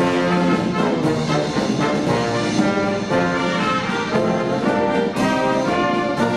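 Amateur parish brass band, with euphoniums, tubas, trumpets and a tenor saxophone, playing a march in full ensemble: held chords moving from note to note over a steady beat.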